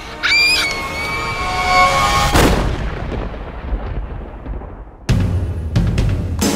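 A girl's high-pitched scream, held for about two seconds, over trailer music. A deep cinematic boom hit follows and decays slowly over a couple of seconds, then loud drums come in near the end.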